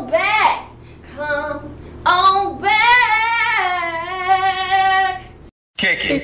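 A woman's voice singing: a few short phrases, then one long held note that cuts off suddenly near the end.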